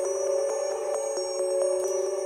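Electronic music playback of a synth melody: held notes that change about twice a second, with a high ringing layer above and no bass or drums.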